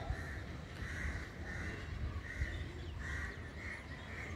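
Birds calling outdoors: a series of short calls repeating about twice a second.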